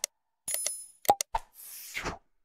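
Sound effects for an animated subscribe-button graphic: a few sharp clicks, a short ringing chime about half a second in, and a whoosh in the last half second.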